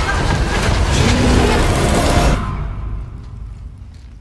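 A loud trailer sound-effect hit: a dense noise over a deep rumble that breaks off about two and a half seconds in and then dies away under the title card.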